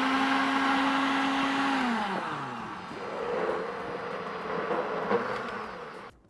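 Electric countertop blender running, puréeing fresh parsley and coriander with a little water. About two seconds in its motor pitch slides down, then it runs on more quietly with a wavering pitch as the herbs churn, and stops at the end.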